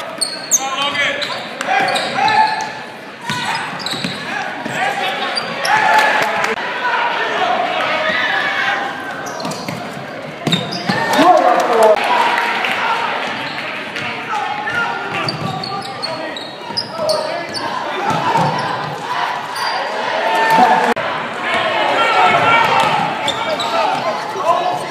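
Basketball crowd in a gymnasium, many voices shouting and cheering over one another, with a basketball bouncing on the hardwood court in the hall's echo.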